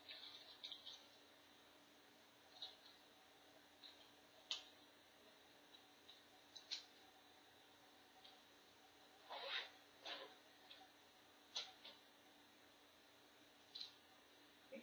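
Faint clicks and rustles of brushes and pens being rummaged through in a zippered fabric pencil case, a few scattered small knocks in an otherwise quiet stretch.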